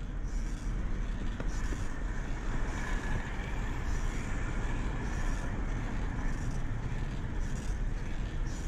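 Steady low rumble of wind and tyre noise from a bicycle riding along a paved city bike lane, with road traffic alongside. A faint hiss pulses about once a second.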